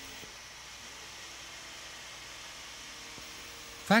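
Steady faint hiss with a low hum underneath.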